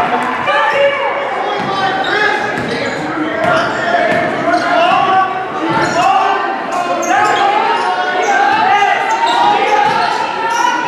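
A basketball dribbled on a hardwood gym floor, with players' and spectators' voices calling out and echoing around the gym.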